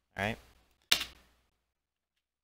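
A single sharp click of a computer key being pressed, about a second in.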